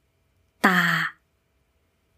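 Speech only: a woman says the single Thai word 'ta' ('eyes') once, drawn out for about half a second, starting about half a second in.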